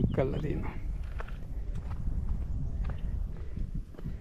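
A man's voice trails off at the start, then a steady low rumble of wind on the microphone with a few faint, irregular footstep knocks as the camera operator walks along the dam's walkway.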